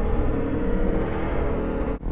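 A dramatic music sting: a gong-like swell of many held tones over a deep rumble.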